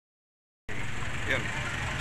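Steady low rumble of vehicles and street noise, with faint voices in the background, starting suddenly about two-thirds of a second in after silence.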